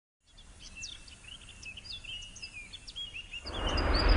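Several birds chirping and twittering over a low rumble, with a rush of noise swelling up loudly near the end.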